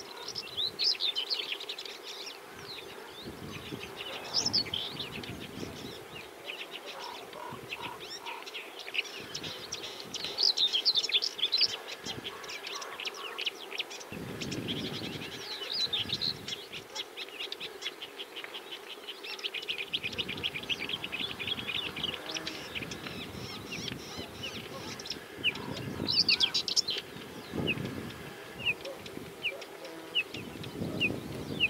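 Whinchat singing: repeated short phrases of quick chirping notes, loudest about a third of the way in and again near the end.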